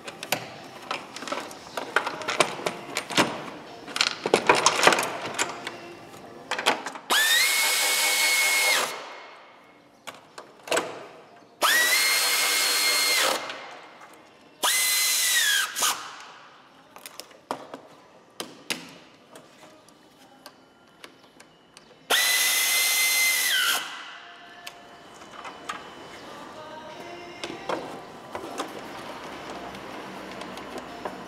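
A power drill-driver run in four short bursts, each a steady whine that winds down in pitch as it stops. Between the runs, clinks and knocks of tools and parts being handled.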